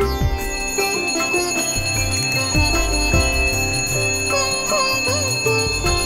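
Small brass puja hand bell rung continuously during an aarti, its ringing starting about half a second in and holding steady, over instrumental background music.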